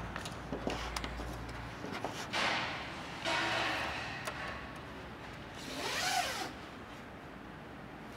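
A marker pen drawn across masking tape on a car's front guard, making a few short scratchy strokes about two, three and six seconds in.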